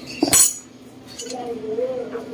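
Steel parts of a tube-bending die clanking together: one sharp metallic clatter with a brief ring near the start as a steel bar is pulled from the die, then quieter handling of the steel die plates.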